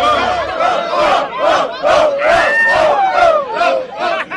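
A crowd of many people shouting and yelling at once, loud and sustained: the reaction to a freestyle rap punchline.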